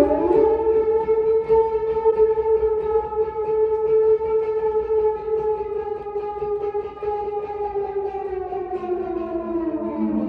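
Electric guitar played flat across the lap through effects, sounding one long sustained note that slides up at the start, holds steady, then slowly sinks near the end. A lower held note comes in shortly before the end.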